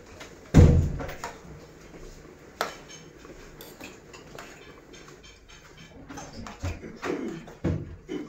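Metal fork stirring and tapping in a stainless steel saucepan of cooking pasta. There is one loud knock about half a second in, a sharper click about two and a half seconds in, and lighter clinks near the end.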